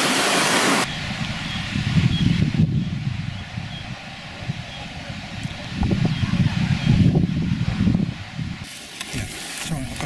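Rushing mountain stream, cut off abruptly under a second in, then wind buffeting the microphone in uneven low gusts.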